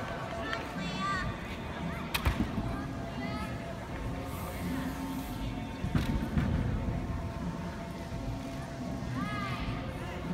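A gymnast working the uneven bars over a background of arena crowd chatter. There is a sharp bang about two seconds in, as she mounts, and a heavy thump around six seconds, as she swings on the bars.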